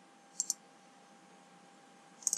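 Computer mouse button clicked: a quick pair of sharp clicks, press and release, about half a second in, over a faint steady hum.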